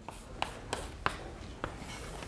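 Chalk drawing lines on a blackboard: faint scraping strokes with a few sharp taps as the chalk meets the board.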